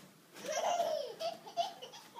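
A toddler laughing: one long, high-pitched laugh starting about half a second in, followed by a few short bursts of laughter.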